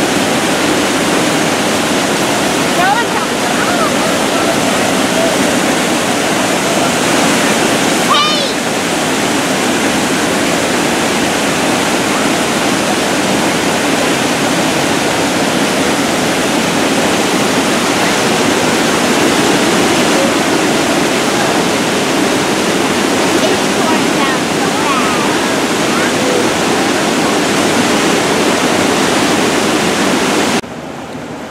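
Creek water pouring over a low weir into the pool below: a loud, steady rush that holds even throughout.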